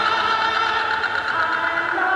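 Live rock band's guitars holding a loud, sustained droning chord with no drumbeat, the notes shifting to a new chord near the end.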